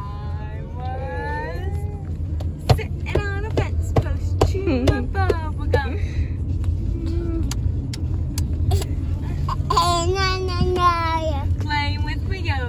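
High voices singing a children's camp song, with long held notes near the end, over the steady road rumble inside a moving car.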